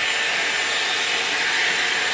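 Dyson Airwrap hair styler blowing air through its curling barrel as hair is wound on it: a steady rush of air with a faint high motor whine.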